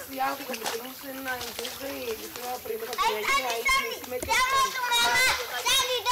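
Children's voices at play, softer at first, then louder high-pitched calls in the second half.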